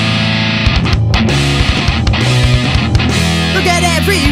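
Rock music with distorted electric guitar and a steady drum beat.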